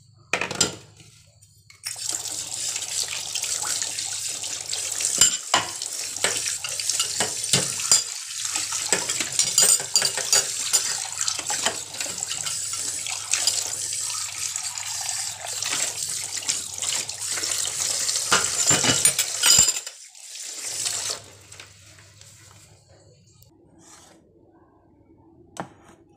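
Tap water running into a steel bowl in a kitchen sink as a hand rinses it, with clinks of metal on metal. The water starts about two seconds in and cuts off suddenly near the end.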